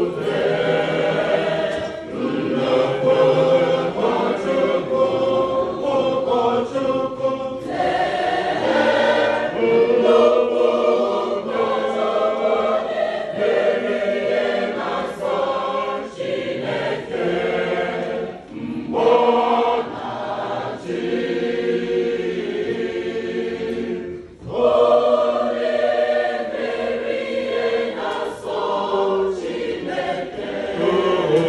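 Church choir singing a hymn together in Igbo, many voices led by women, in phrases broken by short breaths between lines.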